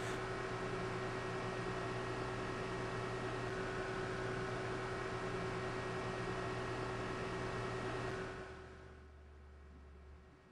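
Steady machine hum with hiss and a few held tones, an industrial sound effect for the BOF oxygen lance being driven into position by its hydraulic cylinder. It fades away about eight and a half seconds in, leaving only a faint low hum.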